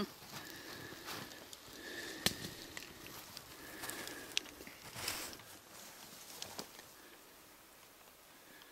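Scattered rustles and sharp clicks of brush and handling as someone moves through tall grass and shrubs, the loudest about two and five seconds in, with a few short, thin bird calls in the background.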